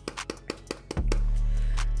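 Background music: a run of quick beats, then a low note held from about halfway through.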